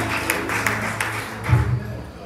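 Gospel church music winding down at the end of a song: tambourine beats over a sustained low bass. A final loud low bass note sounds about one and a half seconds in, then the music stops.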